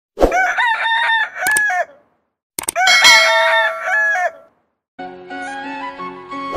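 Two rooster crows, each lasting about two seconds, one after the other. Instrumental music starts about five seconds in.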